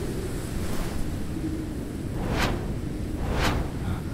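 Wind sound effect of a snowstorm: a steady low rushing rumble, with two quick whooshes about two and a half and three and a half seconds in.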